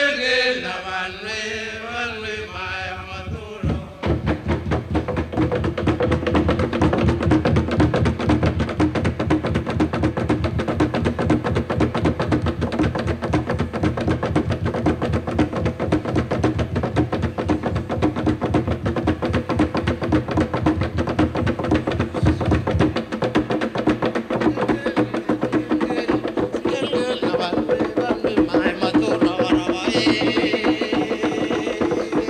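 Group chanting of men's voices for the first few seconds. Then fast, continuous drumming on wooden tam-tams (upright slit drums) takes over, in a dense, even rhythm. The deepest drum sound drops out about two-thirds of the way through, and voices come back faintly near the end.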